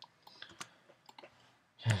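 Several faint, separate computer mouse clicks, scattered unevenly, as an object is dragged and a button is pressed in software. A voice starts speaking near the end.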